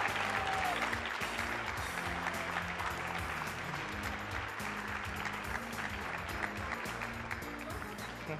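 A large audience clapping, the applause slowly fading, with music playing underneath.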